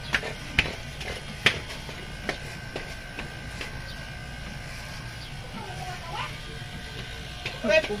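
Cordless electric hair clipper running with a steady hum while cutting hair, with a few sharp clicks in the first second and a half.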